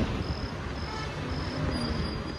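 Cricket chirping in short, high, evenly spaced chirps, about two a second, over faint outdoor background noise.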